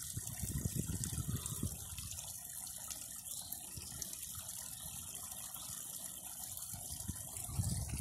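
Small rock waterfall splashing steadily into a garden koi pond.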